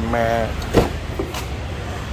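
Car door being opened on a Mitsubishi Xpander: a sharp latch click a little under a second in, then a lighter click, over a steady low hum.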